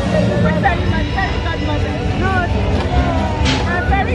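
A street parade passing: the steady low hum of parade float vehicles under many voices from the crowd and performers. A short hiss comes about three and a half seconds in.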